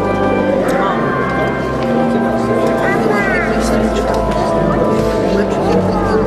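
Live band music with long held keyboard chords, with people's voices mixed in.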